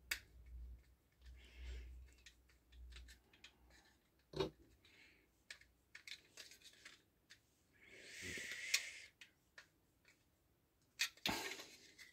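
Faint, scattered clicks and taps of a screwdriver turning small screws into a plastic model part and the part being handled, with a brief rustle about eight seconds in.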